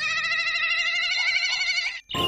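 A steady electronic warbling tone with a fast wavering pitch, like a ringtone, held for about two seconds and cut off abruptly at the end.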